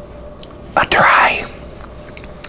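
A man's short, breathy whisper close to the microphone, loud and over in about half a second, just before the middle, with a few faint mouth clicks around it.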